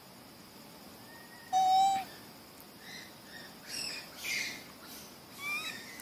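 Animal calls: one loud, steady call lasting about half a second, about a second and a half in, then several fainter, higher chirps that rise and fall in pitch.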